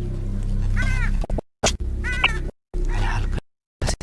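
A cat meowing a few times, short cries that rise and fall in pitch, over a low steady music bed; the sound cuts out suddenly in brief gaps.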